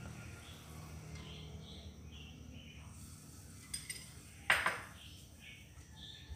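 Mostly quiet, broken by two short clinks of kitchenware. The second, about halfway through, is the louder.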